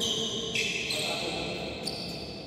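Indoor badminton rally: sharp racket hits on a shuttlecock and high squeaks of shoes on the court floor.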